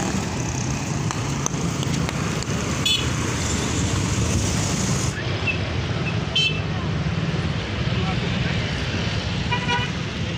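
Busy street ambience: a steady rumble of road traffic, with brief horn toots about three seconds in, again past six seconds, and near the end.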